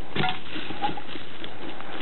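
Steady rushing background noise with a few light clicks.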